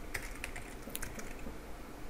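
Computer keyboard being typed on: a handful of quiet key clicks spread across the two seconds.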